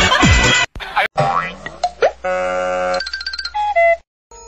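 Electronic music with a heavy beat cuts off about half a second in. A cartoon-style transition jingle follows: rising swoops, a held buzzy tone, quick bell-like dings, and a two-note tone that steps down at the end.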